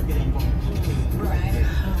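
Steady low rumble of a moving car heard from inside the cabin, with music and a voice over it.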